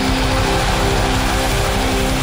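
Heavy rock music: distorted electric guitars holding chords over fast drums.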